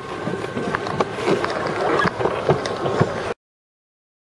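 Alpine slide sled running down its track: a steady rumbling scrape with scattered clicks and knocks, which cuts off to silence a little over three seconds in.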